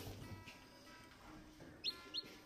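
Mostly quiet, with one short, high, falling peep from a newly hatched chicken chick near the end, over faint steady tones.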